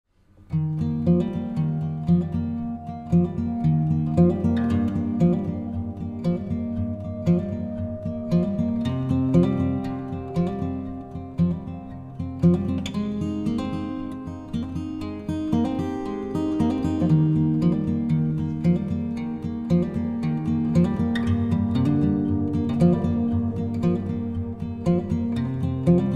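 Instrumental background music led by plucked acoustic guitar, starting about half a second in.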